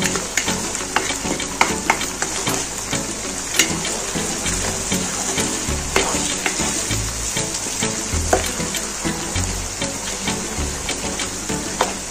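Chicken leg pieces and sliced onions sizzling in hot oil in a kadai, stirred with a wooden spatula that clicks and scrapes against the pan again and again over a steady frying hiss.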